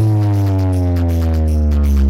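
Loud, deep electronic bass music played through a large outdoor DJ speaker-box stack: one long bass note sliding slowly down in pitch.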